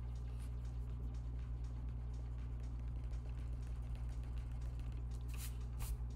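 Steady low electrical hum with faint room noise, and a faint scratchy rubbing of an eraser on paper near the end.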